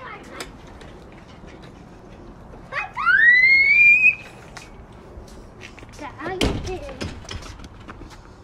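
A child's high-pitched squeal about three seconds in, rising in pitch and lasting about a second. About six and a half seconds in comes a dull thud with a short vocal sound.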